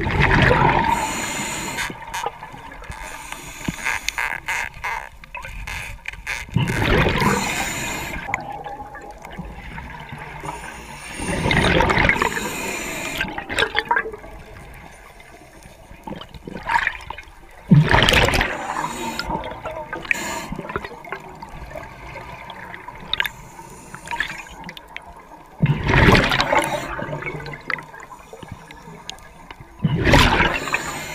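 Underwater bubbling and gurgling from a scuba diver's exhaled air venting from the regulator, coming in loud surges every five to eight seconds with quieter water noise between breaths.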